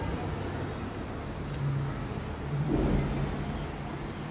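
Road traffic noise: a steady rumble, with a vehicle engine swelling briefly about two and a half seconds in.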